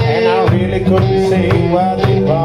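Solo live blues: electric guitar and wordless singing over a steady kick-drum beat, about two beats a second.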